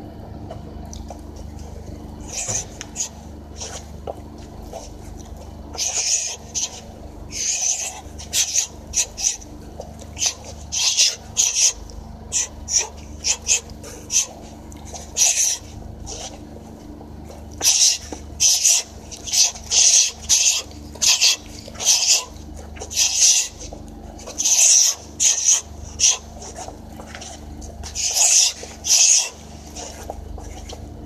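A person's short, sharp hissing breaths in quick irregular runs, exhaled with fast punching arm movements.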